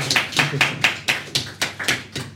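Small audience applauding, individual hand claps distinct, thinning out towards the end.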